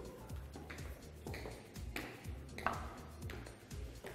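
High-heeled stilettos clicking on a hard tiled floor in an even walking rhythm, about a step every two-thirds of a second, each click ringing briefly in the hall. Quiet background music plays underneath.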